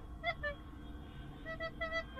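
Plastic soprano recorder playing short detached notes: two near the start, a pause, then four quick repeated notes of the same pitch near the end. A low steady rumble sits underneath.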